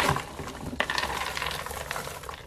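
Popped popcorn tumbling out of an upturned silicone microwave popcorn popper into a plastic container: a light crackly patter with a few small clicks, after a sharper knock at the very start.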